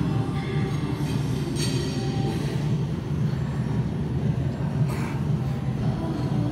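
A steady, dense low rumble with no clear beat, continuing unchanged from the surrounding bass-heavy background music.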